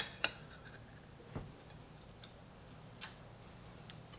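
Metal fork clinking against a ceramic plate: two sharp clinks at the very start, then a soft bump and a faint tap later on.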